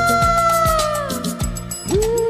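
A woman singing one long held note into a microphone that slides down and fades about a second in, over a backing track with a steady beat.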